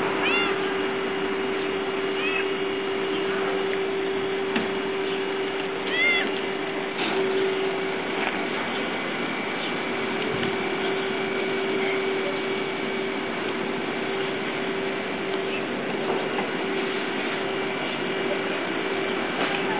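A tabby cat meowing, three short rising-then-falling calls in the first six seconds, the middle one fainter. A steady low hum runs underneath throughout.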